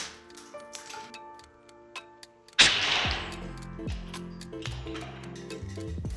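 A homemade PVC air cannon, pumped up with a bike pump, fires about two and a half seconds in: a sudden blast of rushing air that dies away within a second, followed by a few light knocks as the ornaments it shot land. Background music with a ticking beat plays throughout.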